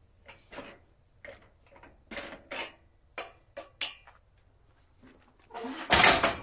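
Short metal clinks and clanks as locking pins are pulled and worked loose on a steel fold-down cargo rack, followed near the end by a louder clatter as the mesh rack, with the spare tire on it, swings down flat.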